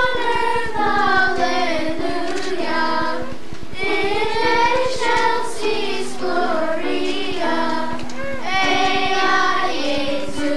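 A children's choir singing, the voices holding long notes with little break.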